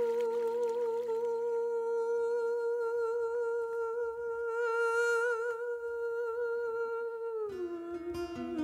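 Background music: a voice hums one long held note with a slight waver, then slides down to a lower note near the end. Soft low backing chords fade out about two seconds in.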